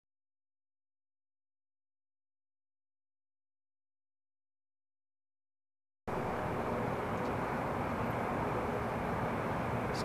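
Dead silence for about six seconds, then a steady rush of outdoor background noise picked up by the camera's microphone, starting abruptly and holding at an even level.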